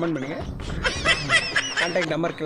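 A voice with high-pitched snickering laughter, the laughter coming in quick repeated bursts from about a second in.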